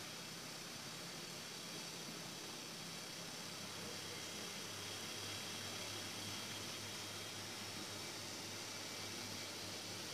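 Steady background hiss with no distinct sound events, and a faint low hum coming in about halfway through.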